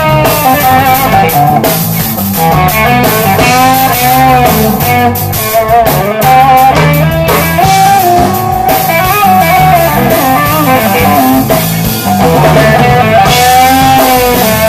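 Band playing a blues-rock instrumental: an electric guitar plays a lead of sustained, bent and wavering notes over a drum kit and low steady notes.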